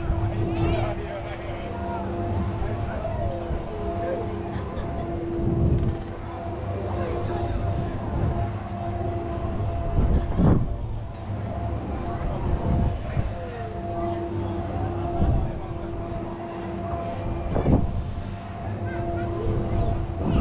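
Spinning balloon-gondola amusement ride in motion: a steady machine hum from the ride that fades in and out as it turns, over a low rush of wind and motion noise, with a few knocks from the gondola.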